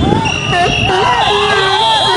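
A person's voice in repeated rising-and-falling phrases about half a second each, with steady high thin tones above it.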